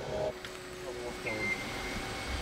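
Faint voices under a steady background hum, with a short high beep about a second in that recurs roughly every second and a quarter.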